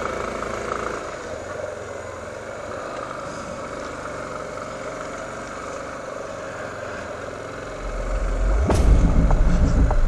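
Yamaha motorcycle engine running at low speed in slow city traffic, a steady hum. Near the end a much louder, deep low rumble comes in.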